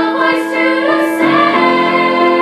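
Girls' chamber choir singing held notes in harmony, with piano accompaniment.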